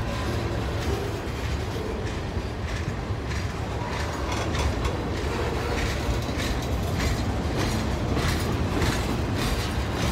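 Freight cars of a manifest train rolling past close by: a steady low rumble of steel wheels on rail, with irregular clicks and clanks of wheels over rail joints.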